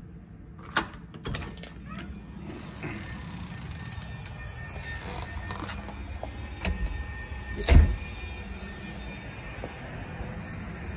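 A door's lever handle and latch clicking as the door is opened, then a steady low outdoor rumble with light knocks of handling and footsteps. A single loud thump comes a little before the end.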